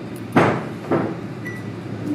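Bootmaker's hand tools knocking against a boot sole: two sharp knocks about half a second apart.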